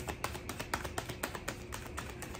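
Tarot cards handled by hand: a quick, irregular run of light clicks as the cards are worked through.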